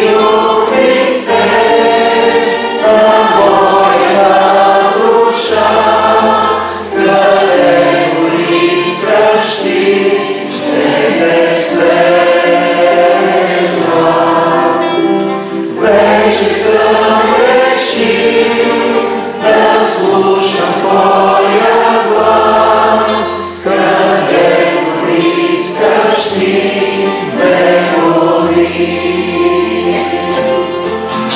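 A small mixed group of men and women singing a worship hymn together in harmony, accompanied by acoustic guitar and keyboard, with bass notes changing every couple of seconds.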